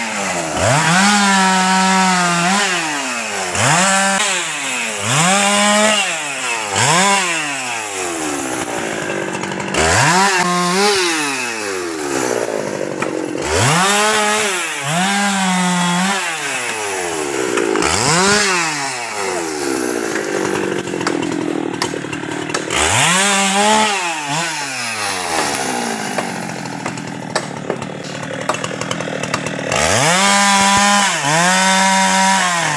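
Husqvarna 390 XP two-stroke chainsaw revving up and down over and over, every second or two, as it bucks felled teak trunks into logs, with steadier running in stretches later on.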